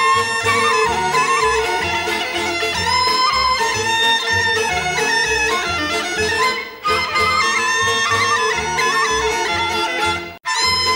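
Instrumental folk music in a Bulgarian style: a bagpipe melody over a steady drone, with a pulsing bass beat. The music drops away briefly about two-thirds of the way in.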